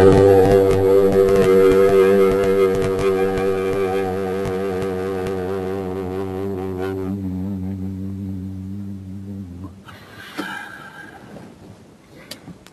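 Voices chanting a long Om in unison on the note G (Sol), held on one steady pitch and slowly fading until it dies away about nine and a half seconds in.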